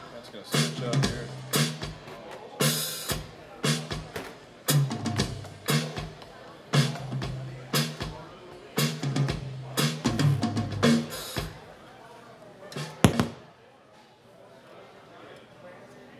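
Live band with a drum kit and guitar playing a steady beat, loud hits about once a second, then ending the song with a last loud hit about 13 seconds in. After that only a faint crowd murmur in a large room remains.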